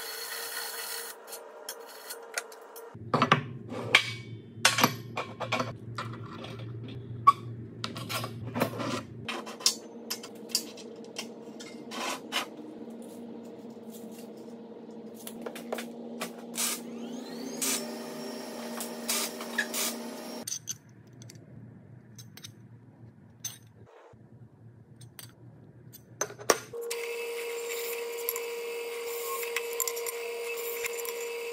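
A string of metal-shop work sounds across several cuts: a cordless drill boring through steel square tube, then clicks, knocks and scraping of tools and steel parts being handled. Near the end a drill press motor runs steadily.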